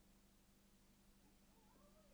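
Near silence: room tone with a steady low hum, and a faint rising and falling sound in the second half.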